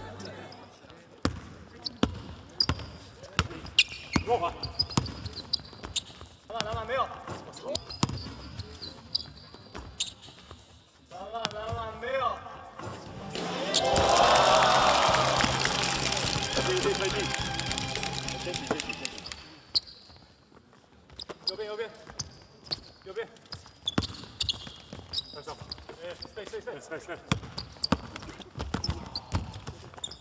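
A basketball bouncing on a hardwood gym floor during play, with players' voices. About fourteen seconds in, a louder stretch of cheering and shouting rises and lasts several seconds after a point is scored.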